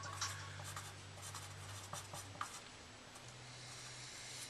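Pencil writing on paper: faint, scattered scratching strokes of the lead across the sheet.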